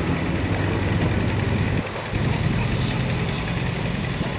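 Small engine-driven water pump running steadily, pumping water out of the pond.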